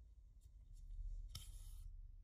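Sewing thread drawn through ribbon by hand, a short soft hiss of about half a second a little past the middle, with a few faint ticks of handling.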